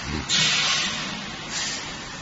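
HYTW 340 conveyor meat cutter running, with a loud hissing rasp starting about a third of a second in and lasting nearly a second, then a shorter hiss near the end.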